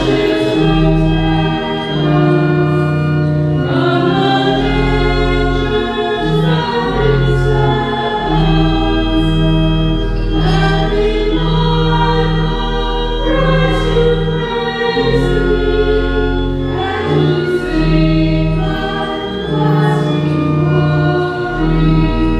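A hymn sung by a choir with organ accompaniment: sustained organ chords with a bass line that steps to a new note about every second, under the singing voices. This is the offertory hymn at Mass.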